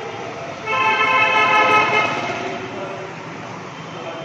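A horn sounding one steady, loud blast of about a second and a half, starting just under a second in and then fading, over a steady low background rumble.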